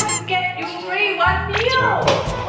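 Background music with a woman's and a child's voices talking over it, and edited-in cartoon sound effects: a sweep at the start and a falling glide near the end.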